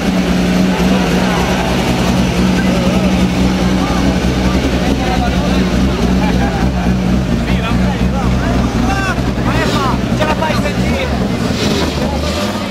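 Abarth Grande Punto Super 2000 rally car's engine idling steadily, with crowd voices around it.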